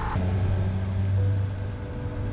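A motor vehicle engine running steadily as a low hum, with a thin higher tone joining about a second in.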